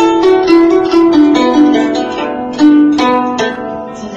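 Guzheng being played: a quick run of plucked notes, each ringing on, whose melody steps gradually downward.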